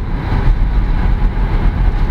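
Steady low road and engine rumble inside the cabin of a moving Mercedes-Benz car.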